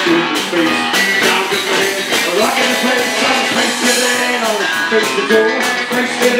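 Live rock and roll band playing: electric guitar, upright bass and drums with cymbals, with a man singing into a microphone over them.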